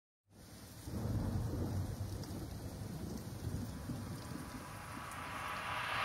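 Low rumbling, like thunder, under a steady hiss of rain, starting about a second in and swelling a little near the end.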